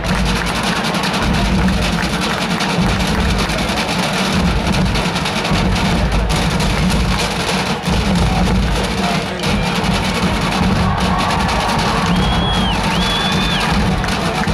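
Massed marching band playing loudly, with heavy drums and brass filling the stadium, over crowd noise from the stands. Two short high tones sound near the end.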